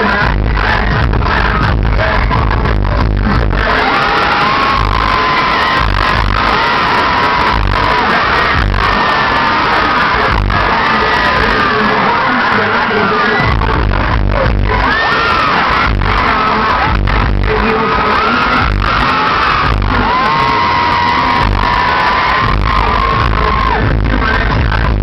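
Live R&B/pop concert music in a large hall, recorded from the crowd: a heavy bass beat with vocals over it. The bass drops out for a couple of seconds about halfway through, then comes back.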